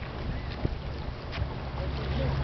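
A steady low motor hum with a few faint clicks over it.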